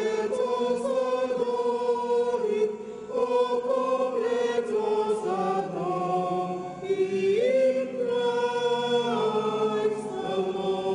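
A church choir of men and women singing a hymn together, holding long notes that change every second or two.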